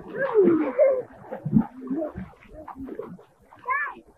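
People's wordless calls and squeals, the pitch gliding up and down, loudest in the first second, with a short rising squeal near the end.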